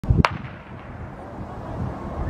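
Starting pistol fired to start a sprint race: two sharp cracks about a quarter of a second apart, then low outdoor rumble.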